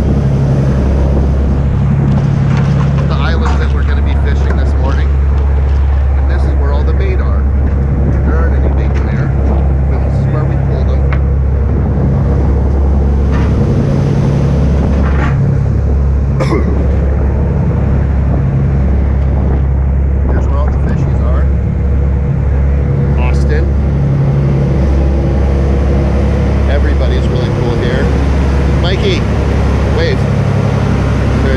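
Fishing boat's engines running steadily underway, a constant low drone with the wash of the wake over it.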